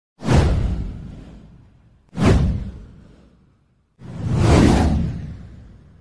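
Three whoosh sound effects from an intro title card, each with a deep rumble underneath. The first two hit suddenly and fade away over a second or two. The third swells up, then fades.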